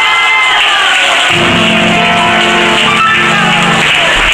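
Live klezmer band music led by a violin, with the audience clapping along; a final held chord ends just before the end.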